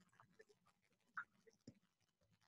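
Near silence: faint room tone over the call, with a couple of faint, brief sounds about a second in.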